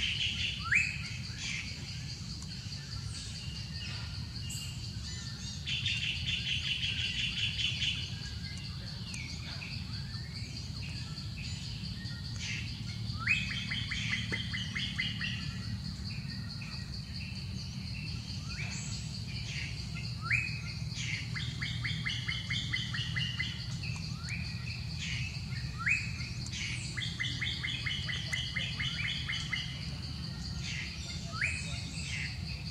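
Birds chirping and trilling again and again, with short rapid trills and quick rising calls, over a steady high-pitched whine and a low steady rumble. A few short sharp sounds stand out, about a second in and several more times later.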